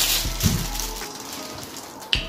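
Plastic wrapping rustling and crinkling as it is pulled off a water bottle. The sound fades away over the two seconds, with a soft thud about half a second in.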